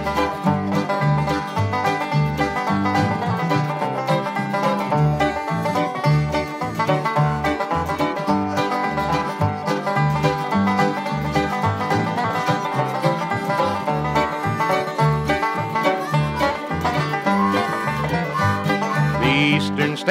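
Bluegrass band playing an instrumental break, a banjo up front over rhythm guitar and bass notes on the beat.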